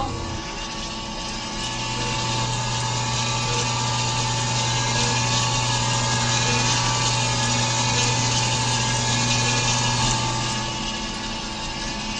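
ECMO centrifugal pump head turned by its emergency hand crank, a steady mechanical whirring hum that builds about a second and a half in and eases off near the end. It is kept spinning by hand to maintain blood flow after the pump's powered console has failed.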